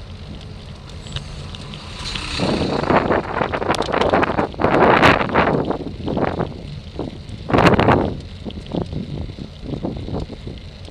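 Wind buffeting the microphone of a bicycle-mounted camera, rising into loud gusts from about two and a half seconds in as a coach bus passes close by going the other way, over a steady low rumble of road and tyre noise.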